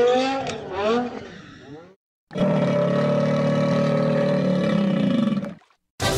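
Car engine revving up and down, fading out about two seconds in. After a short silence, a steady held tone with several pitches sounds for about three seconds and stops abruptly.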